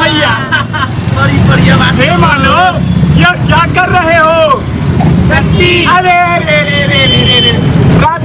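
Loud, animated speech from street-play actors delivering their lines, with a low traffic rumble behind.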